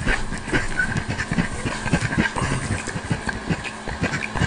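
Livescribe smartpen writing on paper: an irregular run of short scratchy strokes and ticks, several a second, over a faint steady hiss.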